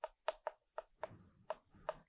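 Chalk tapping and clicking against a chalkboard as characters are written: about seven short, faint taps at irregular spacing.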